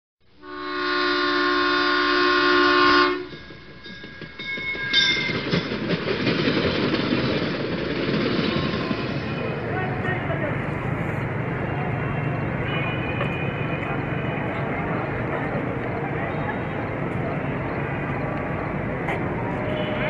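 A held train-horn chord for about two and a half seconds at the start, then the steady rumble of diesel locomotives and station noise, with faint voices, as a locomotive approaches.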